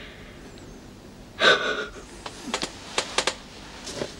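A person's sharp breathy gasp about a second and a half in, followed by several small, quick clicks in the second half, like lip or mouth sounds at close range.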